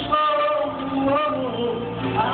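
Karaoke singing: a voice holding long notes that bend and step down in pitch about a second and a half in.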